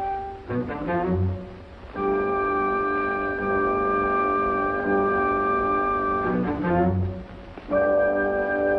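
Orchestral background score with bowed strings: long held chords, twice broken by a short passage of quick notes over a few low notes.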